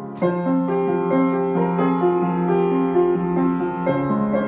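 Solo piano playing: a new chord is struck about a quarter second in, followed by a steady run of broken-chord notes over sustained bass notes.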